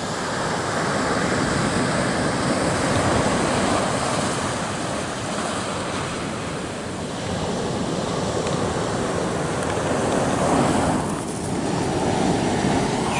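Ocean surf washing onto a pebble beach, a continuous rush that slowly swells and eases, with wind on the microphone.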